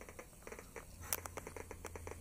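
Highly sensitive Geiger counter clicking at irregular intervals as it picks up background radiation, with one louder click a little past halfway. A low steady hum runs underneath.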